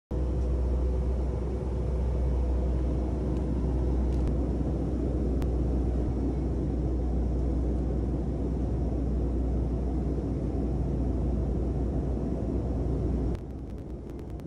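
Steady airliner cabin noise in flight: an even, loud rumble heaviest in the low end. Near the end the level drops abruptly and a run of quick, evenly spaced clicks starts.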